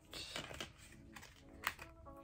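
Small handling sounds from unpacking a crochet hook: a short rustle, then a single sharp click about one and a half seconds in, as the little protector cap is worked off the end of the 4 mm hook.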